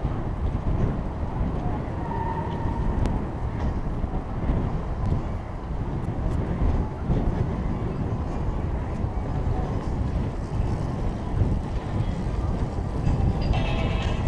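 Steady low rumble of a bicycle rolling over brick pavers, tyre and frame vibration mixed with wind on the microphone.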